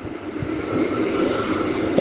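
A steady, rushing mechanical noise with a faint high whine on top, swelling in level about half a second in.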